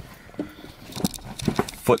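Car keys jangling on their ring and clicking as the key goes into the ignition lock: a few scattered sharp clicks.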